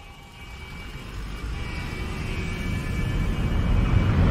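Trailer sound design: a deep rumbling swell that grows steadily louder, with faint sustained high tones above it, building toward a hit.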